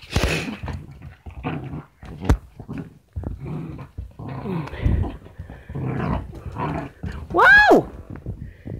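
Dog growling in play while tugging on a cloth toy. Near the end comes a short, loud high cry that rises and falls.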